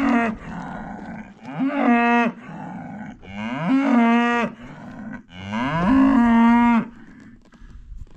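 Cattle mooing: the end of one call, then three long moos a second or so apart, each rising quickly and then held steady, the last one the longest.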